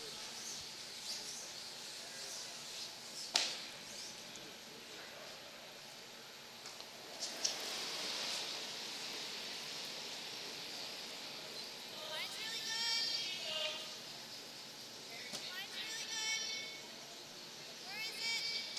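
Curling rink ambience with one sharp knock a few seconds in. Later come curlers' shouted sweeping calls, high raised women's voices heard at a distance in two spells, as the last stone is delivered and swept.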